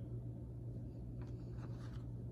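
Old paper photographs rustling and sliding as one is picked up from a loose pile, a few soft scrapes in the second second, over a steady low hum.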